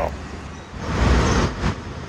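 Road traffic on a city street: a passing vehicle's noise swells to its loudest about a second in, then fades.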